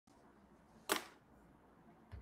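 A single sharp click about a second in, over a faint steady hiss.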